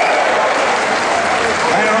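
Concert audience applauding, with a man speaking over the PA near the end.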